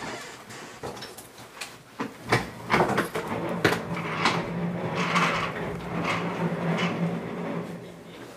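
A wheeled chair being pushed through a doorway: a series of knocks and bumps against the door and frame, then its casters rolling steadily across a hard floor with a low hum.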